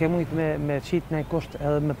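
A man speaking in a low, even voice.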